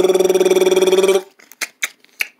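A person's voice doing a fluttering, steady-pitched buzz in imitation of a chainsaw for about a second, which cuts off suddenly. It is followed by a run of short clicks from paper being crinkled.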